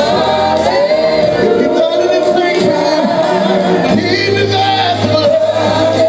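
Gospel praise-and-worship singing: several voices holding and sliding long sung notes through microphones, over a steady low bass-keyboard accompaniment that drops out for a few seconds and comes back.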